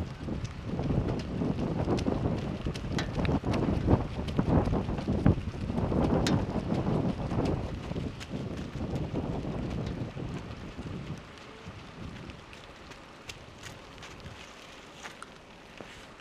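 Wind buffeting the microphone in gusts, dying down about two-thirds of the way through.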